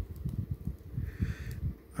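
Hands handling a small plastic action figure while flexing its double-jointed knees: irregular soft, dull knocks and light rubbing.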